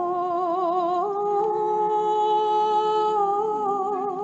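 A cappella choir chanting a liturgical hymn in harmony, with several voices holding long notes with vibrato. The chord shifts about a second in and again near the end.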